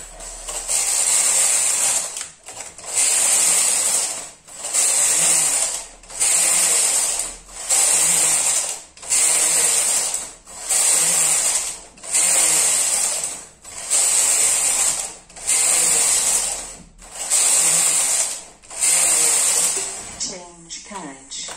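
Brother KH930 knitting machine's lace carriage pushed back and forth along the needle bed, a rushing mechanical clatter on each pass. About eleven passes in steady succession, each about a second and a half long with a brief pause at each end.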